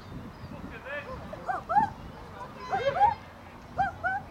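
Short, high-pitched yelping calls, each rising and falling, in quick groups of two or three, over low chatter.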